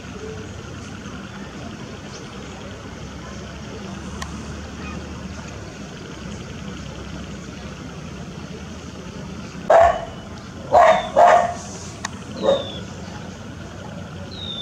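Four short, loud animal calls starting about ten seconds in, the middle two about half a second apart, over a steady background murmur; a few faint high bird chirps follow.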